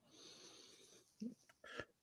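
Near silence, with a faint breath into a microphone at the start and a brief soft mouth sound about a second in.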